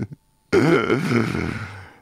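A man's wordless, drawn-out vocal sound lasting about a second and a half, starting about half a second in after a brief silence and trailing off near the end.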